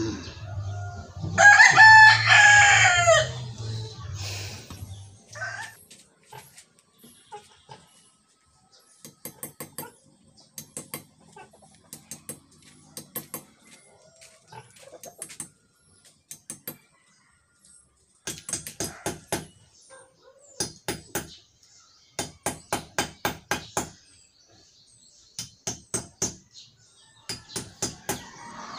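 A rooster crows loudly once near the start over a low steady hum that stops about five seconds in. From about nine seconds in, a steel hammer strikes a chisel set against the concrete wall beside the gate, in quick bursts of several sharp ringing blows with short pauses between.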